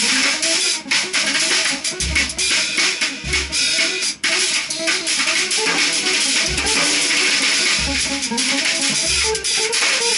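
Free improvisation on semi-hollow electric guitar and drum kit: restless picked guitar lines over a dense wash of cymbals. Five irregularly spaced bass-drum hits fall through the passage.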